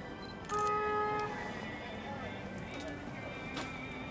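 A single car horn toot lasting under a second, about half a second in, the loudest sound, over background music playing steadily throughout.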